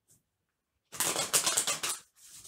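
A deck of tarot cards shuffled by hand: a rapid, papery riffling that starts about a second in and lasts about a second.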